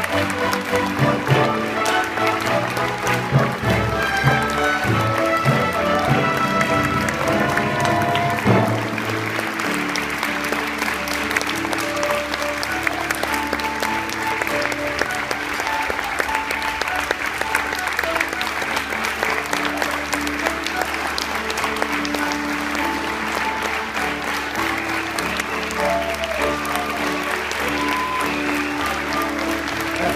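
Pit orchestra playing the curtain-call music while an audience applauds. The applause grows thicker about nine seconds in and from then on sits over the music.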